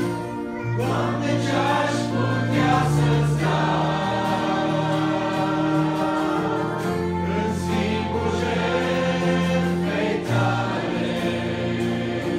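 Mixed choir of young men and women singing a Romanian worship song in harmony, with a male lead voice, strummed acoustic guitar and keyboard accompaniment.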